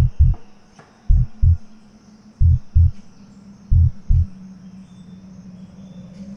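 Heartbeat sound effect: four slow double thumps (lub-dub), about one every 1.3 seconds, then stopping about four seconds in. Under it runs a steady low hum and a high insect drone.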